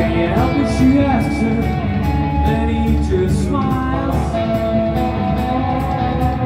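Live rock band playing: electric guitars, bass and a drum kit with a fast, steady cymbal beat.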